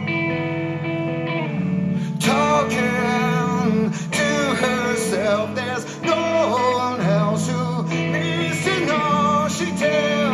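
Live rock band: electric guitar and band playing, with a male lead voice singing from about two seconds in.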